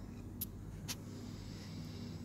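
Two short, sharp clicks about half a second apart over a steady low background hum.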